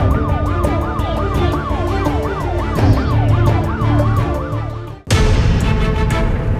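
Police-style siren sound effect in a TV show's transition sting: a fast rising-and-falling wail over music with a quick, even beat, cutting off abruptly about five seconds in as the music carries on.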